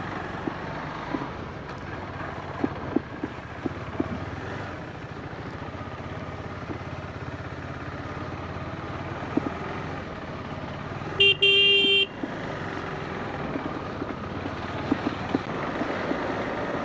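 Motorcycle engine running at low speed on a rough dirt track, with scattered light knocks. About eleven seconds in, a horn sounds once, loud, for under a second.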